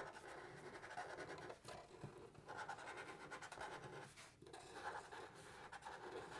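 Black Sharpie felt-tip markers drawing small circles on paper: faint, intermittent strokes of the marker tips on the sheet.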